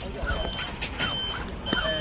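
A high electronic beep repeating about every half second, three times, with people talking over it and a low rumble underneath.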